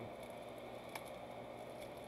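Faint crinkling and rustling of the plastic wrapping being peeled off a pack of Ultra Pro 3x4 toploaders by hand, with a couple of small clicks.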